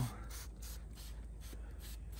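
Hand spray bottle squeezed over and over, a quick even run of squirts, about four or five a second, spraying coil-cleaning mixture onto an RV rooftop air conditioner's condenser coil.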